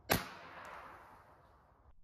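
AEA HP Max .50 cal big-bore PCP airgun firing a AAA battery in a 3D-printed sabot: one sharp report right at the start, trailing off over about a second and a half.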